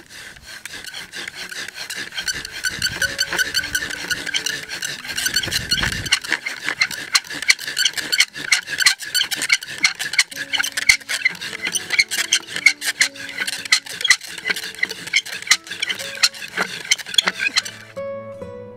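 A bow drill working: a wooden spindle spun back and forth by a cord bow, grinding into a wooden fireboard block with a fast, rasping squeak on every stroke, getting louder over the first few seconds.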